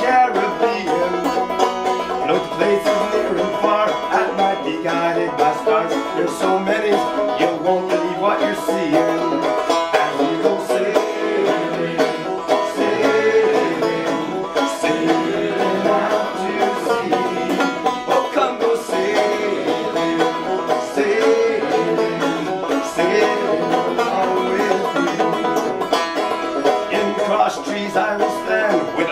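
Banjo played solo as an instrumental break, a continuous run of plucked notes and chords at a steady rhythm.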